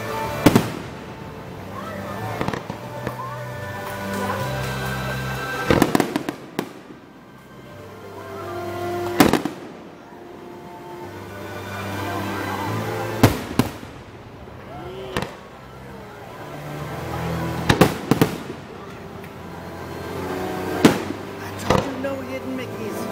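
Aerial fireworks shells bursting with sharp bangs every few seconds, some in quick pairs and clusters, over music from the show's soundtrack.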